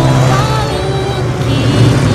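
Propeller warplane engines droning during an air attack, with rock music and electric guitar underneath.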